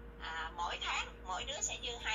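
Speech only: a person talking in a steady run of phrases.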